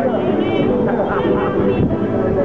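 A rondalla playing and singing: plucked laúdes, bandurrias and guitars with a mixed choir.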